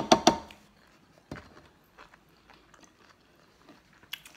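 Plastic squeeze bottle of ranch dressing sputtering as it is squeezed nearly empty: three loud spurts in the first half second. After that there are only faint eating sounds.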